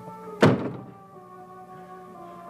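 A single heavy thud about half a second in, a man collapsing to the floor, over sustained background music of held tones.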